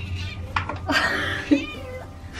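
A house cat meowing for its food as the bowls are carried to it: a run of calls from about half a second in, the last one falling in pitch, over background music.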